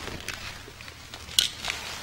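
A corded telephone handset being picked up off its cradle after ringing: small handling clicks and rustles, with one sharp click about one and a half seconds in.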